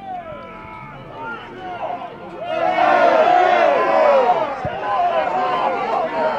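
Several people at a football match shouting over one another, getting much louder about halfway through and staying loud.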